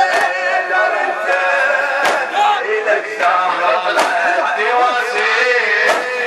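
A male reciter chants a Shia mourning lament (latmiya) in Arabic, with a crowd of men striking their chests in unison about once every two seconds.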